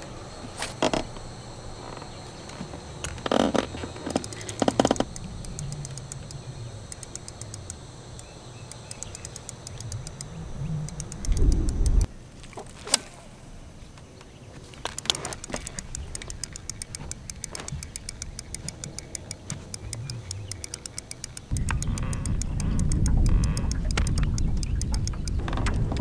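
Johnson Century spincast reel being cranked on retrieves, its gears giving long runs of fine, rapid clicks. Wind rumbles on the microphone in gusts, strongest near the end.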